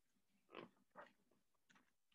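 Near silence: room tone, broken by two faint short sounds about half a second apart.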